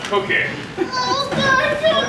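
Young actors' voices on stage, children speaking lines that cannot be made out as words, carrying in a hall.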